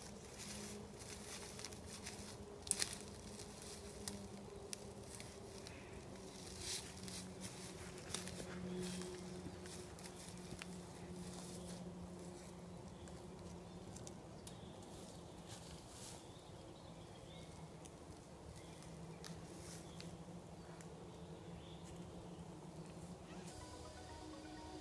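Faint steady buzz of a flying insect, with a few soft crackles and rustles of dry leaf litter scattered through it.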